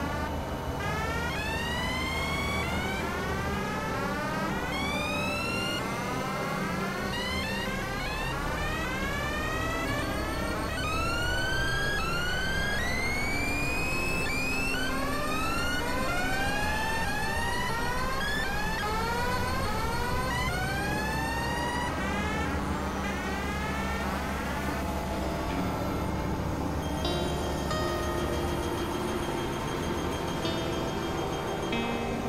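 Experimental electronic synthesizer music: a dense, noisy drone with many overlapping short rising pitch glides, like repeated siren swoops. The glides thin out a little after about two-thirds of the way through, leaving steadier high tones over the drone.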